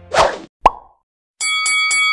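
Editing sound effects for a countdown transition: a short rush of noise, a sharp pop about two-thirds of a second in, then a moment of silence. After that a bright ringing chime starts and is struck three times in quick succession, and it holds.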